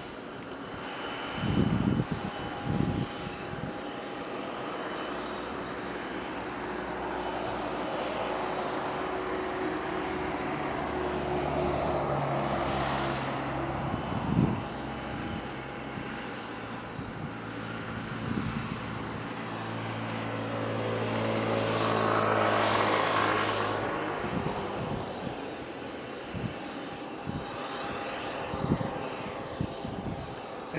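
Boeing 737-8 MAX's CFM LEAP-1B turbofan engines running at taxi power as the jet turns onto the runway, a steady whine and rumble that swells about twelve seconds in and again a little past twenty seconds. A few brief low thumps come near the start and around fourteen seconds.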